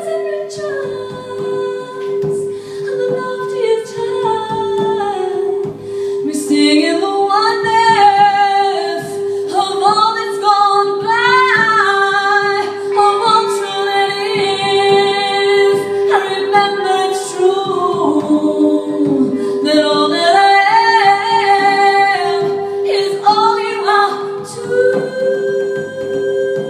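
A woman singing a slow melody that rises and falls, quieter at first and fuller from about six seconds in, over one steady, slightly pulsing sustained drone note.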